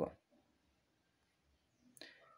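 Near silence: room tone after a word trails off, with one brief sharp click just before the end.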